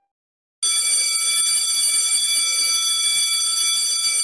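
A steady, high electronic tone, alarm-like, with a hiss under it. It starts abruptly about half a second in, after silence, and holds unchanged.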